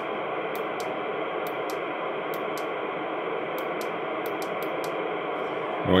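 Stryker SR-955HP 10-meter transceiver's speaker giving out steady receiver static on FM with the squelch open, the hiss of a receiver with no antenna connected.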